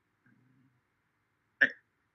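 Near silence on a video call, broken about one and a half seconds in by a single short voice sound, a clipped syllable or mouth sound from the presenter that cuts off abruptly.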